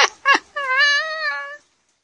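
Two short sharp cries, then one high-pitched, wavering drawn-out cry of about a second that cuts off suddenly.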